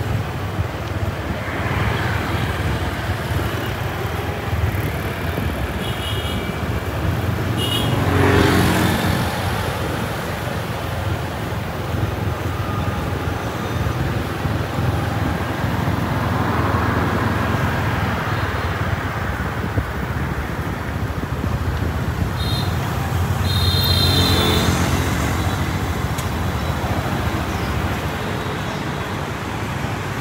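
City street traffic of cars and motorbikes running past, a steady rumble that swells as louder vehicles pass about eight seconds in and again about twenty-four seconds in. Short high beeps come shortly before each pass.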